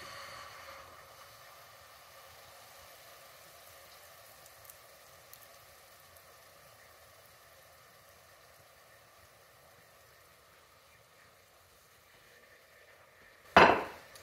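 Dark corn syrup sizzling in a hot nonstick pot over a gas flame as it is poured in and scraped out of the measuring cup: a steady hiss that slowly fades. A single sharp knock near the end.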